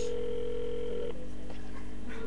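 Telephone ringback tone, heard through the phone's speaker: one steady tone that stops about a second in, the far-end line ringing while the call waits to be answered.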